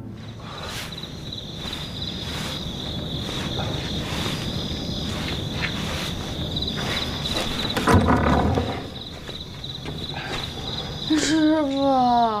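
Crickets chirring steadily in the night air, with soft scattered rustles and a louder short sound about eight seconds in. Near the end a woman's voice calls out wearily with a falling pitch: "Shifu".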